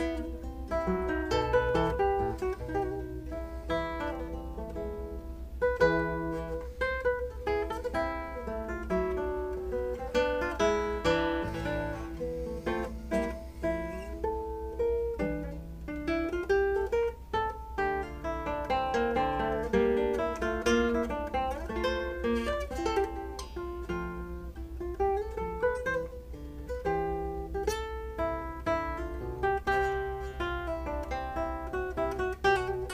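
2008 Fabio Zontini classical guitar played solo fingerstyle: a continuous run of plucked nylon-string notes and chords.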